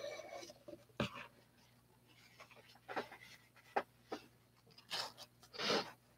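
Mostly quiet, with a few faint, scattered knocks and scrapes from handling a clear plastic mixing cup and wooden stir stick; the sharpest knock comes about a second in.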